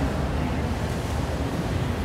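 Steady low rumbling background noise, even throughout, with no distinct event standing out.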